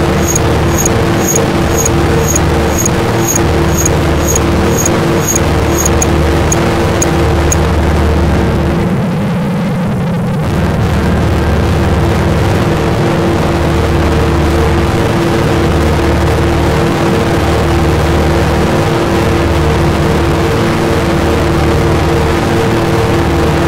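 Harsh noise electronic music: a dense, distorted wall of noise over two steady droning tones and a pulsing low throb. High clicks tick about twice a second through the first eight seconds, then drop out. The noise thins briefly around the tenth second before resuming.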